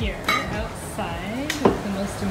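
Plates and cutlery clinking on a dinner table as it is set, with one sharp clink about one and a half seconds in.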